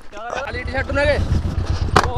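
A man's raised, shouting voice over the low, steady running of an idling motorcycle engine, with a short sharp knock at the very end.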